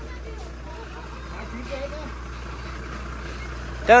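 Diesel engine of a MAN lorry running at low revs as the heavily loaded truck creeps forward, a steady low hum. A man's shout starts right at the end.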